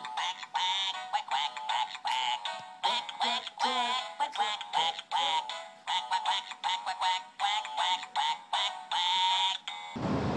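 Animated plush bunny toy singing a high-pitched tune in a synthetic voice, thin and without bass.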